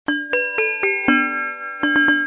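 Electronic gong bell playing a synthesized chime tune through its speaker: five bell-like notes about a quarter second apart, falling in pitch, the last one held, then the tune starting over near the end.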